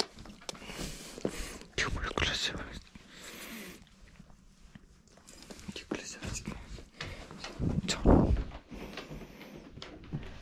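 A man's soft, wordless whispering and murmuring close to the microphone, mixed with rustling. The loudest moment is a muffled bump about eight seconds in.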